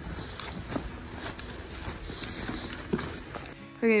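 Footsteps in snow, with soft background music underneath.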